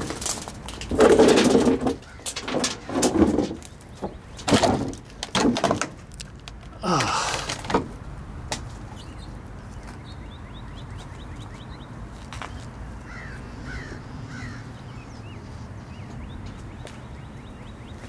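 A run of loud, short rustling and knocking noises over the first eight seconds, from close handling and movement, then a steady quiet outdoor background with a few faint bird chirps.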